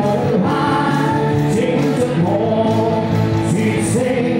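Live band music with singing, loud and steady: a four-piece of saxophone, electric guitar, keyboard and lead vocal playing a pop ballad.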